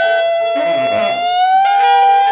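Tenor saxophone holding one long high note that slides slightly upward after about a second and a half, with piano notes moving underneath.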